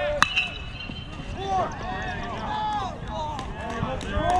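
A metal baseball bat strikes the ball with a sharp ping that rings on for about a second. Voices then shout and call out across the field.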